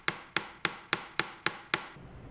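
Ball-peen hammer striking a 16-gauge copper wire clasp on a metal bench block: seven quick, evenly spaced taps, a little over three a second, each with a short metallic ring. The blows flatten parts of the wire and work-harden the clasp.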